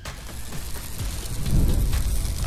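Intro transition sound effect: a noisy rush with a deep rumble that swells to its loudest about one and a half seconds in, like thunder.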